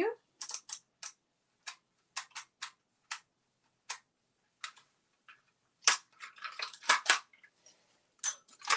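Costume jewelry clicking and clattering as pieces are handled and set down: scattered sharp clicks, with a denser, louder cluster of clatter about six to seven seconds in.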